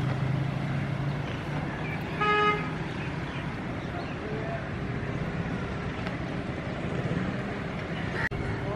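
A single short horn toot about two seconds in, over a steady low hum of road traffic.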